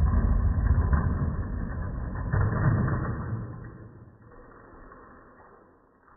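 Toy monster trucks rolling down an orange plastic track, a loud low rumbling rattle of wheels on plastic that fades away over the last few seconds.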